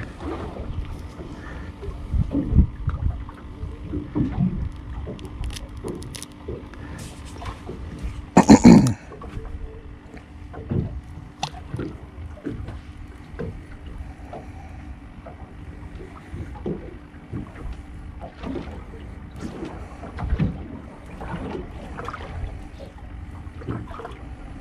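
Wind buffeting the microphone and small waves slapping against a boat's hull at sea, in irregular low rumbles and light knocks. One loud thump comes about eight and a half seconds in.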